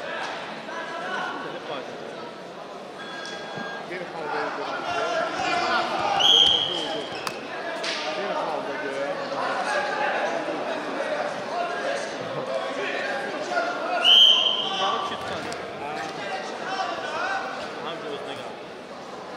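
Two short, shrill referee's whistle blasts, about eight seconds apart, over the steady shouting and chatter of a crowd and coaches in a large sports hall.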